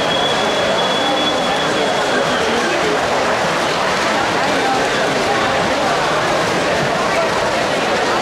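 Spectators cheering and yelling through a swimming race, a steady din of many voices echoing in an indoor pool hall. A thin, steady high tone sounds over it for the first two seconds or so.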